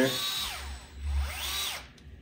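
DeWalt gyroscopic cordless screwdriver with a socket fitted, run in two short bursts. Each time its motor whine rises and then falls as it spins up and stops.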